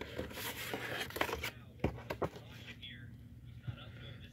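A hand rummaging inside a cardboard diecast box, rustling and scraping cardboard and a paper card, with a few sharp clicks about two seconds in, then quieter handling.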